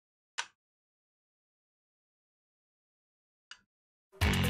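Near silence, broken by two brief clicks: a sharper one about half a second in and a fainter one near the end.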